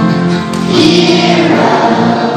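Children's choir singing together.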